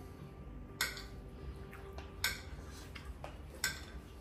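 Eating utensils clinking against a bowl and plate during a meal: three sharp clicks spaced about a second and a half apart, with a few fainter ticks, over a steady low hum.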